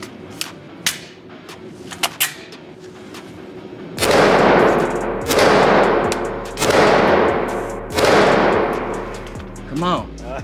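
Semi-automatic pistol fired one shot at a time in an indoor range: four shots about a second and a half apart, starting about four seconds in, each followed by a long echo. A few sharp clicks come before the first shot.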